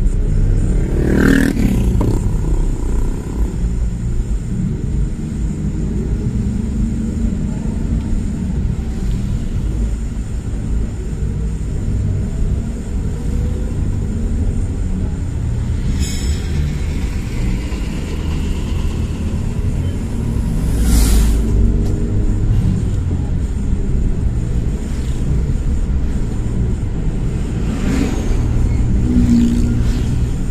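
Steady low road rumble of a car driving through town traffic, with other vehicles rushing past three times: about a second in, about two-thirds of the way through and near the end.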